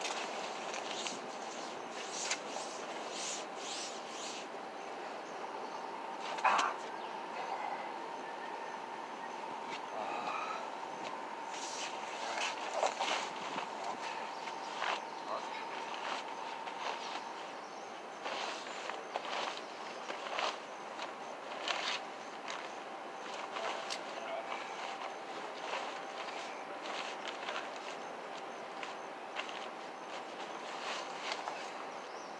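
Soft rustling and scraping of nylon tent fabric and tarp, with scattered small knocks, as the damp tent floor is wiped dry by hand. A faint steady hum runs underneath.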